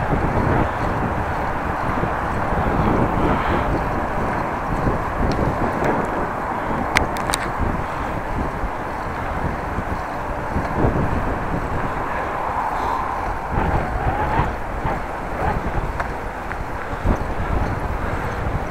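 Steady wind noise on the microphone while riding a bicycle, over the rumble of tyres on an asphalt path. A couple of faint ticks come about seven seconds in.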